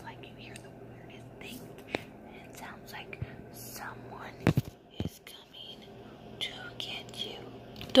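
A woman whispering close to the microphone, with a few sharp clicks and knocks, the loudest about halfway through, and a faint low hum underneath that stops about halfway.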